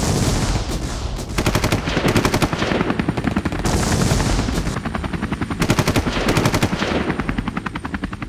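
Automatic gunfire in several long, rapid bursts over a low steady rumble, as in a battle scene from a war film.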